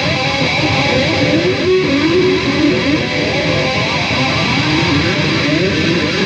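A Charvel Custom DST electric guitar with EMG pickups, played through distortion in fast shredding runs, its notes climbing and falling in quick sequences. The tone is thickened by a TC Electronic MIMIQ doubler effect.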